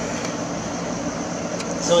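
Steady background noise, an even hiss with a faint low hum; a man's voice starts near the end.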